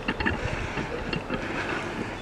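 Diesel engine of an HST Class 43 power car idling steadily, with wind buffeting the microphone.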